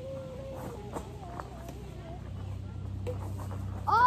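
Children's voices calling out faintly for the first couple of seconds, then a loud, short shout that rises and falls in pitch at the very end.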